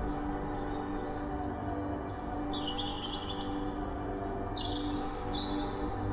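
Slow ambient background music of sustained tones, with two short bouts of high bird chirping, about two seconds in and again near the end.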